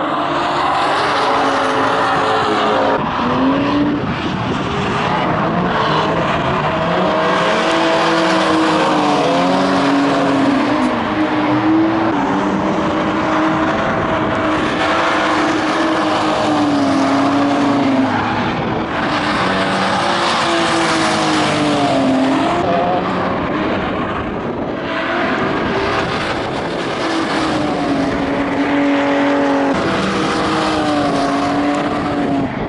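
Drift cars sliding on track, among them a 1996 BMW 528i E39. The engines rev hard, their pitch rising and falling again and again, over a continuous hiss of tyres squealing and skidding.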